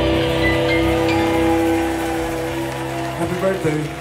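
A live rock band's final chord ringing out and slowly fading, with a cymbal wash over it. About three seconds in, wavering voices from the crowd rise as cheering begins.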